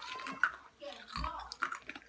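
Girls giggling and laughing in low voices, with a few sharp clicks among the laughter.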